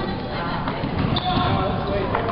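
Table tennis ball clicking off paddles and the table during a rally, over the chatter of voices from the surrounding hall.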